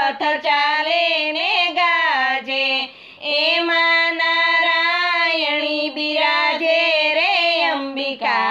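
High female voice singing a Gujarati garba devotional song in long held, gently bending notes, with a short break about three seconds in.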